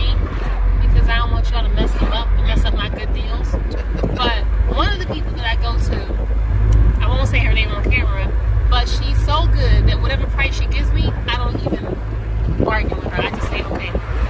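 Steady low rumble of a car's engine and road noise, heard from inside the cabin while it drives, with people talking over it.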